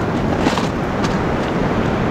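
Steady wind buffeting the microphone over the wash of surf breaking on the beach, with two faint clicks about half a second and a second in.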